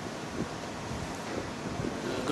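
Steady background hiss of room noise in a hall, with a faint knock about half a second in.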